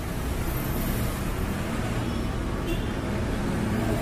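Steady low rumbling of water being heated in a metal kettle toward the boil, with a car engine thermostat submerged in it.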